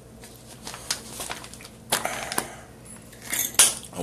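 A man drinking water from a glass: quiet gulps with small scattered clicks, and a sharper knock near the end as the glass is set down on the table.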